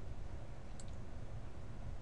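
A couple of faint computer mouse clicks about a second in, as a cell range is selected, over a steady low hum of room and microphone noise.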